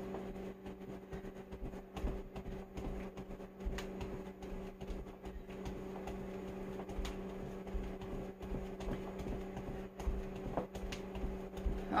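Steady low hum of a running household appliance, with scattered faint thumps and rustles from movement.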